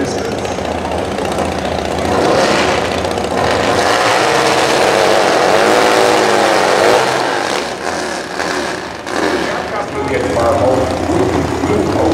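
Big V-twin drag-racing motorcycle engines running at the start line. In the middle one is revved up and down hard through a burnout.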